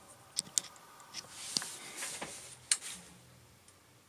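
A few light clicks and taps, about six of them scattered over the first three seconds, over a faint low room hum.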